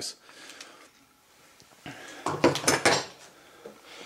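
Metal clinks and clanks of a hand rivet squeezer being handled and set down on a wooden workbench, with a quick cluster of knocks a little past the middle.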